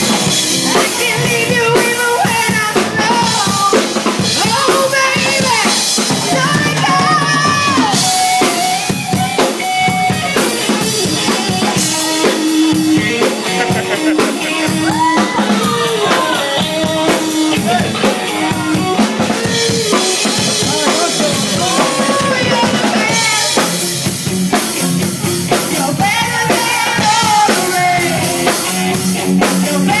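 Live band playing a rock song: a drum kit keeps a steady beat with snare, bass drum and cymbals under an electric guitar melody.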